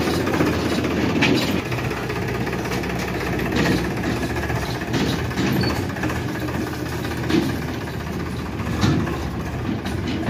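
Powertrac Euro 50 tractor's diesel engine running steadily at low revs as it reverses a hitched tipping trolley, with a few short knocks from the trolley and hitch.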